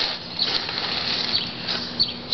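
Hands rustling and crinkling shredded-paper packing and wrapping while unwrapping a small item from a cardboard box, with a faint steady hum underneath in the second half.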